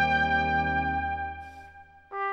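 Brass band holding a sustained chord that dies away over the second half, fading to near silence near the end as the chord is released.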